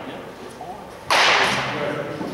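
A pitched baseball smacking into a catcher's glove about a second in: one loud, sharp pop that echoes on for nearly a second in a large indoor hall.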